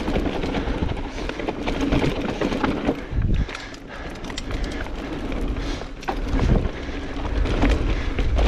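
Mountain bike rolling down a dry dirt singletrack: tyres on dry dirt and leaves, with the bike rattling and wind on the microphone. The noise eases off for about a second around three seconds in, then builds again.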